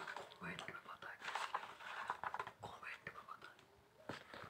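Faint, irregular rustling of a paper notebook page being shifted and handled on a desk.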